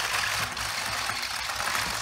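Two Kamigami toy robots' small motors running and their plastic legs clattering fast and steadily on a plywood table as the robots push against each other.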